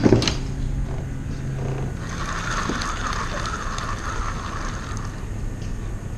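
A low steady hum for the first two seconds, then a spinning reel being cranked, its gears whirring for about three seconds as the shrimp bait is reeled in.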